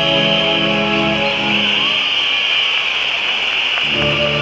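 Concert band's sustained chords fade out about a second in, leaving a steady high-pitched wash of audience noise in the arena. New held chords come in near the end.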